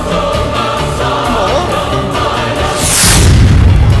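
Dramatic film background score with sustained choir-like voices, then about three seconds in a falling whoosh into a deep, loud boom.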